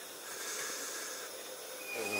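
Faint, steady hiss with no distinct sounds in it.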